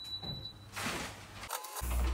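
An electric oven's control panel beeping, one high steady tone about half a second long as a button on it is pressed, followed by a short rustle. Near the end a brief low hum cuts off suddenly.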